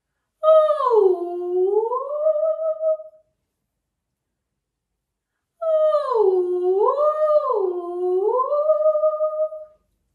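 A woman's voice making sliding "ooo" ghost sounds as a vocal warm-up. The first glides down and back up; after a silent pause, a longer one swoops down and up twice before holding steady.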